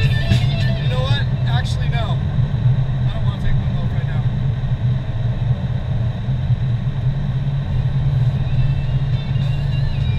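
Steady low rumble of a car's engine and tyres heard from inside the cabin while driving at speed. A song with singing and guitar plays over it in the first two seconds, then drops away to faint, returning right at the end.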